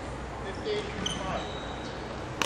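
Sports shoes squeaking on a wooden court floor during badminton footwork: a few short, high squeaks over a steady low hall hum.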